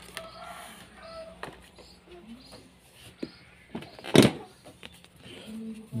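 Handling noise at an open scooter seat and its storage bin: faint scattered clicks, with one short, louder rustle or clatter about four seconds in.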